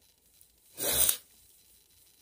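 A woman's single short, forceful burst of breath through the nose about a second in, lasting about half a second.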